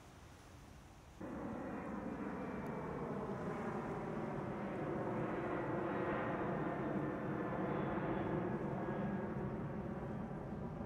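Airplane engine drone, a steady pitched hum that cuts in suddenly about a second in and holds with a slight drift in pitch.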